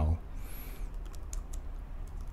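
Computer keyboard being typed on: a handful of separate keystrokes as a short terminal command is entered, following the last moment of a spoken word.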